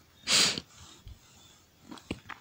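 One breath from the man praying, close to the microphone, about half a second long, just after the start, in a pause between his spoken prayers.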